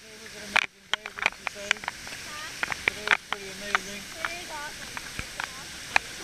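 Water splashing and slapping against a waterproof action camera held at the surface of the pool: a scatter of sharp clicks over a steady hiss. Indistinct voices of other bathers rise and fall in the background.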